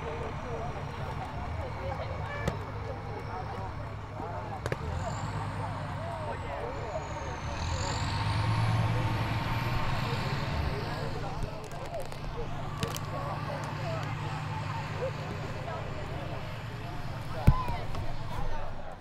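Indistinct chatter of several voices under a steady low hum, with one sharp knock near the end.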